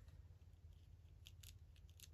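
Near silence, with a few faint short rustles and ticks of hands pressing lace trim down onto paper.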